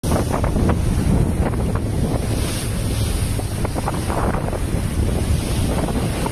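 Strong wind buffeting a camera microphone out on the open sea, over the rush of waves and water. It cuts in suddenly after silence.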